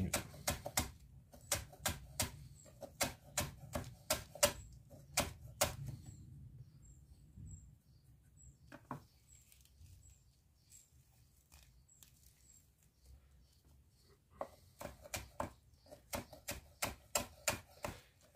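Santoku knife blade tapping on a wooden cutting board as chives are finely sliced, a quick, even run of cuts about two to three a second. The cutting stops for several seconds in the middle, then resumes near the end.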